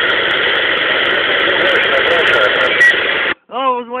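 A President Jackson CB radio's speaker playing a distant station's voice buried in heavy static, the signal fading in and out (the S-meter swinging from 1 to 7). The received transmission cuts off abruptly about three seconds in, and a man's voice starts close by just before the end.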